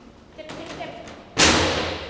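Dog agility teeter plank slamming down once onto its metal frame, about a second and a half in. It is a loud bang that rings briefly as it fades, with quieter clatter just before.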